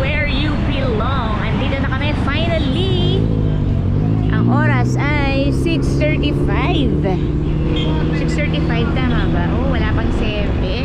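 Motorcycle engine running under way with road noise, picking up a little about three seconds in and then holding a steady pitch, under a woman talking.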